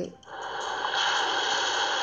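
A steady hiss that drops out briefly just after the start, then carries on.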